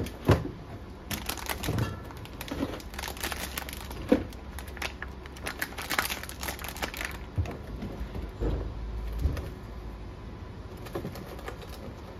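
Plastic packaging crinkling and rustling, with irregular clicks and knocks of bottles and clear plastic fridge bins being handled in an open refrigerator; a low rumble about eight seconds in, then quieter handling.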